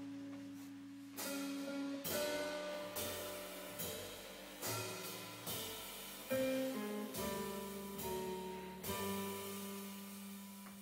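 Jazz guitar trio playing: semi-hollow electric guitar chords over double bass and drums, with cymbal-accented hits landing about once a second, each left to ring and fade.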